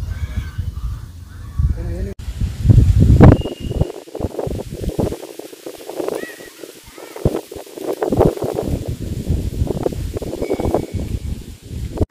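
Indistinct voices of people talking, off-microphone, with wind buffeting the microphone in low rumbles, loudest about three seconds in.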